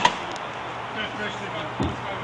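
Steady outdoor background noise with faint distant voices, broken by a sharp click at the very start and a soft thump near the end.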